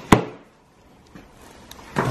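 A hard-covered menu folder shut on a wooden table: one sharp thump just after the start, with a short ring after it.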